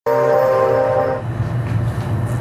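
A held, horn-like musical chord from a TV weather segment's opening sting. It starts abruptly and cuts off about a second in, leaving a low hum.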